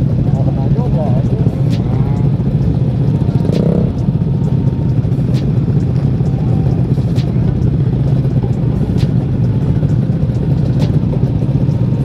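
Motorcycle engines idling in a packed crowd of stopped bikes, a steady low drone that holds level throughout.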